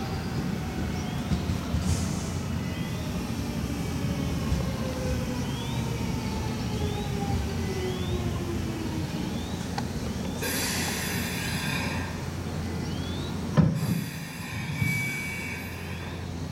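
A JR Series 383 electric train slows to a stop alongside the platform, its motor whine falling steadily in pitch over a low running rumble. In the last few seconds brakes squeal and hiss twice, with a sharp clunk between them as it halts.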